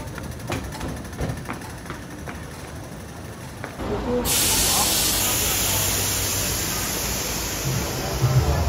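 Fairly quiet background with a few sharp clicks, then about four seconds in a loud, steady hiss starts suddenly, with a short laugh over it.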